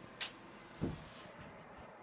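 A sharp click a quarter of a second in, then a dull low thump just under a second in.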